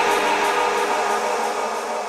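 Drum and bass DJ set playing over a club sound system in a breakdown: held synth chords with no drums. The bass drops away and the music fades lower.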